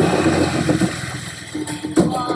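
Film sound effects of a motorcycle engine revving as it charges through water, with a splash of spray that starts suddenly at once.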